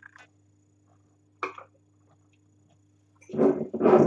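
Wine taster spitting a mouthful of red wine into a spittoon: a loud, wet sound of about a second near the end, in two parts. A short faint mouth sound comes about a second and a half in.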